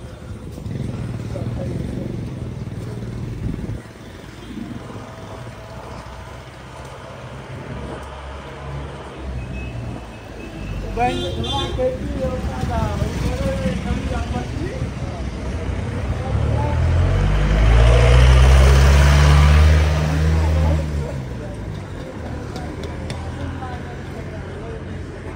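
A motor vehicle's engine passing close by on a street, swelling to its loudest a little past the middle, its pitch rising and then falling as it goes by. Low traffic noise runs under it, with a few voices and a laugh shortly before.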